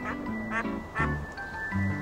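Close-up duck quacks from a stock sound effect: two short quacks about half a second and a second in, over soft background music with held notes.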